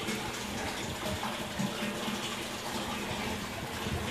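Aquarium water and air bubbles: a steady rushing, bubbling noise from the tank's circulation and air curtain, with a low steady hum underneath.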